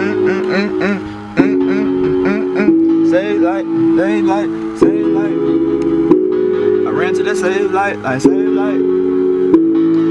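A hip-hop beat made in the iMaschine 2 app playing back: sustained organ-like synth chords that change every one to two seconds, with a voice-like melody and light percussion over them.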